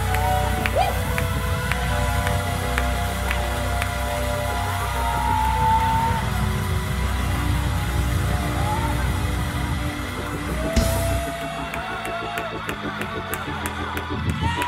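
Live gospel praise-break music from organ, keyboard, bass guitar and drums, with a heavy low end and a few rising vocal cries. About three seconds before the end the bass and drums drop out, leaving organ chords over a steady beat of sharp ticks, about three a second.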